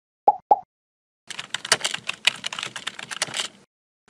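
Animated end-screen sound effects: two quick pops, then about two seconds of rapid computer-keyboard typing clicks as text is typed into a search bar.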